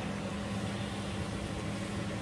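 A steady low hum with an even hiss over it, unchanging, like a running kitchen appliance or fan.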